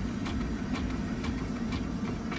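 Steady low hum inside the cabin of a 2009 Mercedes-Benz S600 idling, with faint, fairly regular clicks from the dashboard CD changer working to eject a disc.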